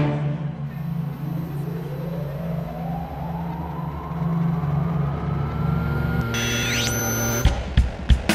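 Synthesizer music: a low sustained drone under a pitch sweep that rises slowly over about five seconds, like a revving engine, with high gliding tones near the end. Drum kit hits come in just before the end.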